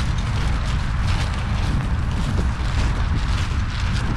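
Wind buffeting the microphone in a steady low rumble, with faint irregular crunching footfalls on the stubble as the horse team and plough move along.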